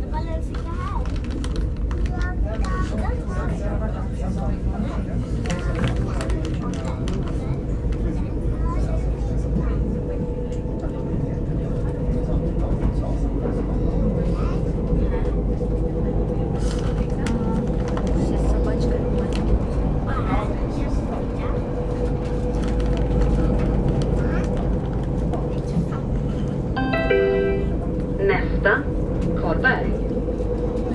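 Commuter train running, heard from inside the carriage: a steady low rumble of wheels on the rails with a constant hum and scattered clicks. A short pitched sound rings out near the end.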